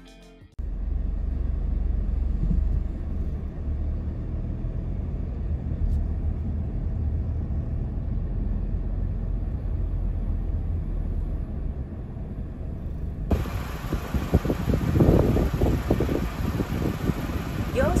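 Steady low rumble of a Nissan X-Trail driving slowly, heard from inside the cabin. About 13 seconds in the sound opens up to brighter outdoor noise with irregular knocks.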